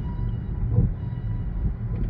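Steady low rumble of road and engine noise inside a car's cabin moving in slow freeway traffic, with faint thin high tones held underneath.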